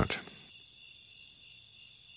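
Crickets singing faintly and steadily, a continuous high-pitched trill.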